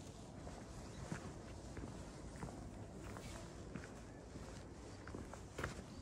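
Footsteps on a cobblestone street at a steady walking pace, each step a faint sharp click, over a low steady outdoor rumble.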